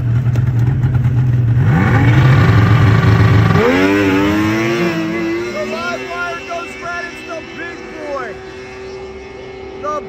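Yamaha drag-racing snowmobile engine idling at the start line, then revving up in a rising sweep as the sled launches, loudest about two to three seconds in. The engine note drops away near the four-second mark, leaving a fainter steady whine as the machines run off down the strip.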